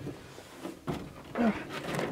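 A man grunting briefly with effort and breathing as he hauls himself up into the high cab of a lifted mud truck, with a scuff against the cab about a second in.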